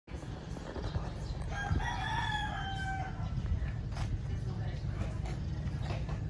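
A rooster crowing once, a single call of about a second and a half that falls slightly in pitch at its end, over a steady low rumble.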